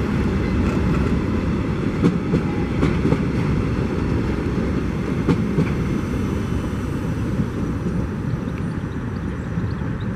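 Empty container flat wagons of a freight train rolling past: a steady rumble with sharp wheel knocks in the first half, easing slightly near the end as the last wagon goes by.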